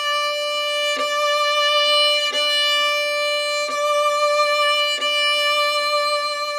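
Violin played loudly with arm weight in the bow: one steady, full note sustained across four even bow changes.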